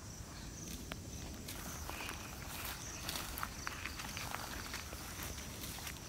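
Rustling in grass and scattered light knocks and clicks as a pair of oxen are fitted with a wooden yoke, with footsteps in the grass; the handling sounds pick up about one and a half seconds in. A steady high chirring of insects runs behind.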